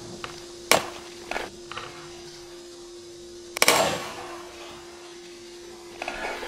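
Stunt scooter doing a slow boardslide on a round steel rail. A sharp metal clack comes about a second in as the deck lands on the rail, and a louder, longer clatter a little past halfway as the scooter comes off onto the concrete.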